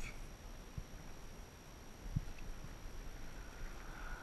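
Faint soft knocks from the RC truck chassis being handled on a carpeted tailgate, over a low, quiet background rumble.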